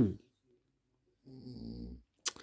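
A man's voice: the tail of a spoken word right at the start, then after a pause of about a second a quiet, low nasal hum like a thinking "hmm" in the second half.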